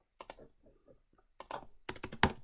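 Faint, scattered clicks of a computer keyboard and mouse: a couple of taps just after the start, then a louder cluster of clicks from about one and a half seconds in.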